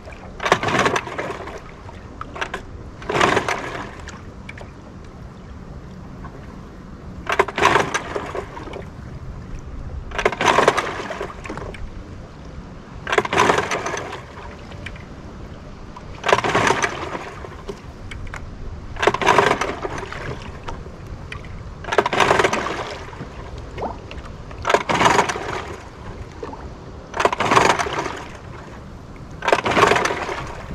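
1949 Kiekhaefer Mercury KE7H two-stroke racing outboard being pull-started over and over: about eleven rope pulls every few seconds, each turning the engine over briefly. It never catches and runs. A steady haze of wind and water lies between the pulls.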